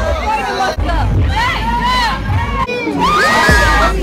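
A group of teenagers shouting and cheering over one another, with long high screams about three seconds in.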